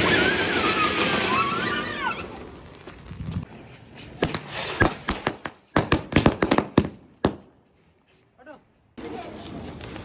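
Ground fireworks: a fountain firework spraying sparks with a loud hiss that fades over the first few seconds. Then a rapid run of sharp crackling pops, loudest about six to seven seconds in, that stops abruptly.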